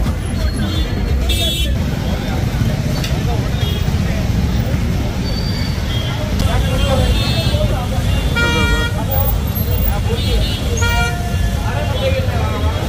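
Crowd chatter over a steady low rumble of slow traffic, with vehicle horns honking: a short high toot about a second in, a longer horn blast about two-thirds of the way through, and another shortly before the end.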